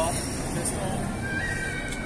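Busy pedestrian street ambience with people talking as they pass. Right at the start there is a short, loud, high, rising voice-like cry.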